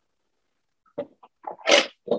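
A man sneezing: a few short catches of breath about a second in, then one loud sneeze near the end.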